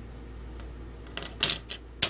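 A low steady hum, then a few light clicks and taps in the second half as a broken-open plastic light switch is handled and moved against fingers and bench.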